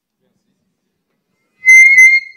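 Near silence, then a loud, high-pitched steady squeal of microphone feedback through the PA system, starting suddenly near the end as the handheld microphone is brought up to the speaker's mouth.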